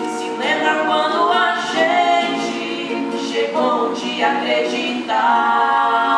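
A man and a woman singing a duet with acoustic guitar accompaniment.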